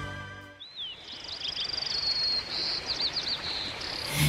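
Small birds chirping, with quick high trills and short sweeping calls, over a steady background hiss. Music fades out just before the chirping starts.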